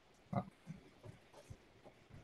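A brief low vocal sound from a person, about a third of a second in, followed by a few faint, short, soft sounds.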